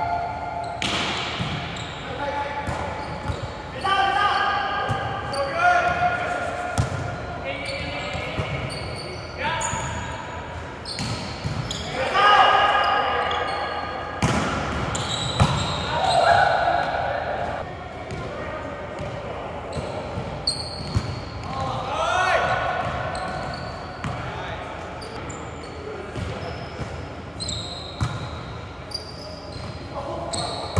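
Indoor volleyball being played in a large echoing gym: repeated sharp slaps of hands and forearms on the ball, mixed with players' shouted calls.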